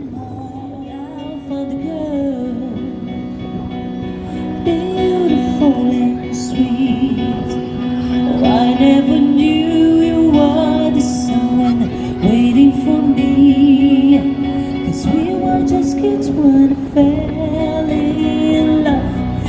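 A woman singing live, holding long gliding notes, with acoustic guitar accompaniment.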